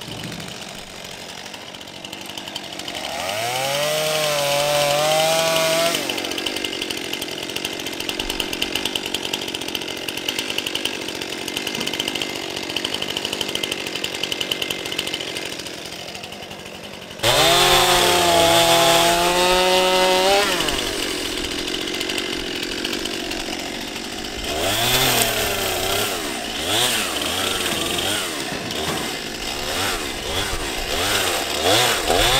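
Two-stroke Stihl chainsaws revving and cutting through mesquite brush. The engine pitch climbs to full revs, sags as the chain bites into the wood, and rises again. The saws run quieter for a stretch in the middle, then turn sharply loud with another high rev about two-thirds of the way through.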